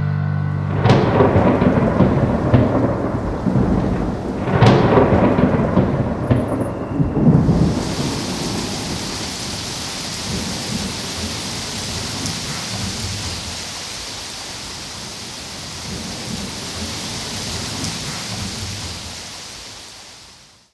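Thunderstorm: two rolls of thunder, about one and four and a half seconds in, then steady rain hiss from about seven seconds, fading out near the end.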